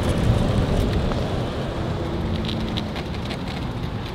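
Open tour cart rolling along the pavement: a steady rush of tyre and wind noise that grows gradually quieter as the cart slows to pull over.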